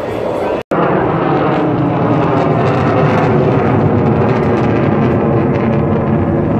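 Loud jet engine noise from a formation of four military jets flying overhead, a dense steady rumble that builds after a brief cut-out in the sound just over half a second in.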